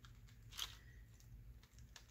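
Near silence, with a few faint clicks of small metal charms and beads knocking together as two tangled charm dangles are worked apart by hand. The clearest click comes just over half a second in.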